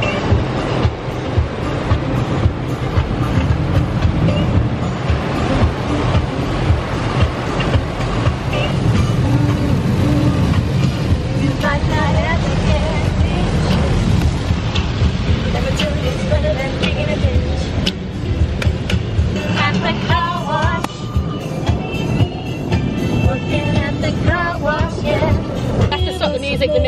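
Automatic car wash spraying water and foam onto a car, heard from inside the cabin as a dense, even rushing with a low rumble. A song with singing plays from a phone in the car over it.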